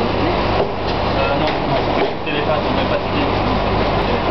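Steady low machine hum of bakery equipment, with people talking indistinctly over it.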